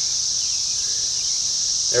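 A steady, high-pitched chorus of insects shrilling without a break.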